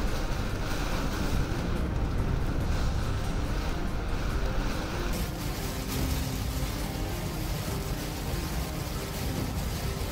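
Heavy rain and road noise in a moving car, heard from inside the cabin, with background music running under it. The noise changes character about five seconds in.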